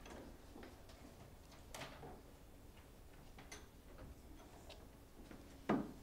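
Quiet classroom room tone with scattered faint clicks and ticks from pencils and worksheets being handled at a table. One sharper knock comes shortly before the end.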